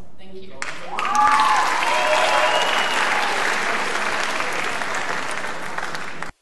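Audience applauding and cheering in a hall, breaking in suddenly about half a second in after a short bit of speech and going on steadily, with a few shouted whoops over the clapping.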